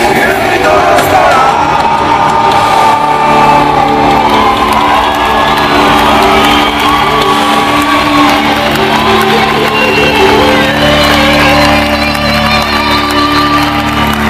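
Live rock band holding a final loud chord at the end of a song, with the audience cheering and whooping over it.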